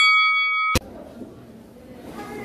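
A boxing ring bell ringing on after being struck, its clang cut off abruptly less than a second in, followed by faint hall noise.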